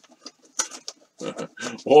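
A small cardboard box being handled: a few brief rustles and taps, then a muttering voice near the end.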